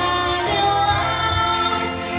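A woman singing a song in Russian into a microphone, holding long notes over accompanying music.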